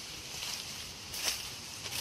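Faint scraping of a small hand tool digging into soil, with a few short scrapes, the clearest just over a second in, over a steady high hiss.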